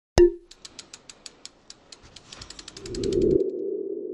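Logo-animation sound effects: a sharp pop just after the start, then a run of quick ticking clicks that come closer together, and a low hum that swells up near the end.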